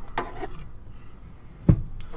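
Faint handling noise, then a single dull thump near the end.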